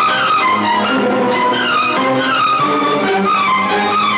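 Instrumental film background music with melodic lines played by instruments, continuing without a break.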